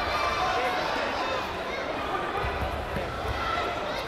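Spectators in a sports hall shouting and calling out, many voices overlapping, with a few low thuds underneath.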